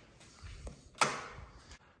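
A single sharp knock about a second in, with a few faint low thuds before it.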